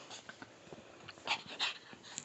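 Chihuahua puppy tussling with a plush toy: faint scuffs and small clicks, with two short hissy bursts a little over a second in.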